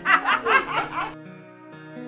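Women laughing together in quick bursts, cut off suddenly a little over a second in. Soft background music with long held notes carries on after.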